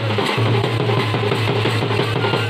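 A wedding band's drums, Bhaderwahi dhol with bass drum and snare, playing a fast, dense dance beat with a steady low tone underneath.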